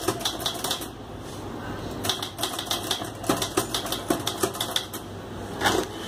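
Manual typewriter being typed on fast: runs of rapid key strikes, a pause about a second in, then a dense run and one louder strike near the end.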